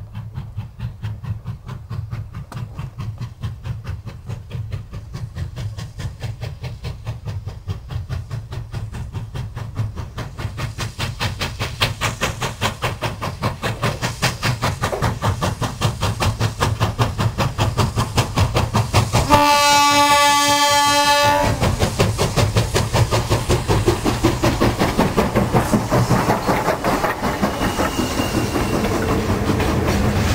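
China Railways QJ class 2-10-2 steam locomotive working a heavy freight, its exhaust beats coming in a quick, even rhythm that grows louder as it approaches. About two-thirds of the way through, one steam whistle blast lasts about two seconds. Near the end, loaded freight wagons clatter past.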